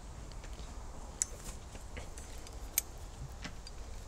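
Faint metallic clicks and light jingles from a horse's bridle fittings and bit as the bridle is handled, two sharper clicks about a second in and near three seconds, over a low steady rumble.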